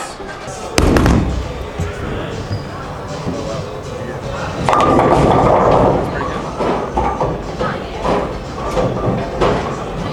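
Bowling alley din: background music and chatter from other bowlers, with a sharp bang about a second in and a louder clatter from about five to six seconds in.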